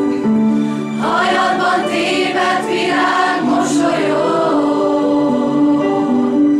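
Mixed student choir singing held, changing chords; the sound grows fuller and brighter about a second in.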